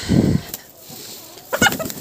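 Chickens clucking, with one short sharp call about one and a half seconds in. A brief rustle of handled hay comes at the start.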